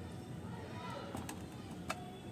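A few light, sharp clicks over low background noise, the loudest near the end, with a faint voice in the background.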